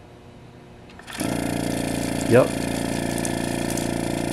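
General Electric CG ball-top refrigerator compressor, its dome cut open, switched on about a second in and running with a steady hum and a rapid, even clatter. It is starting unloaded, the hydraulic unloader holding the suction reed open with no compression until oil pressure builds.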